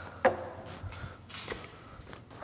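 A light knock as a paper coffee cup is set down on a wooden workbench top, with a short ringing tail, followed by a few fainter knocks and shuffling handling sounds.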